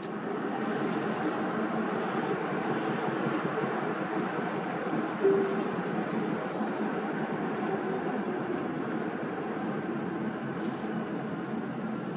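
Steady road and tyre noise of a car driving at low speed, heard from inside the cabin.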